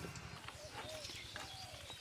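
Steel tumbler pressing and clinking against a steel plate as boiled potatoes are mashed: a few light, separate clicks.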